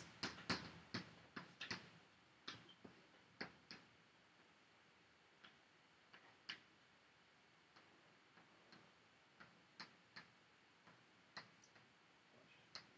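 Near-quiet room with faint, irregular small clicks and taps: several close together in the first two seconds, then scattered single ticks.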